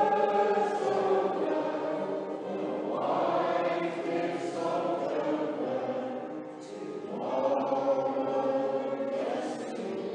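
Mixed amateur choir singing together, sustained sung phrases with new phrases starting about three and seven seconds in.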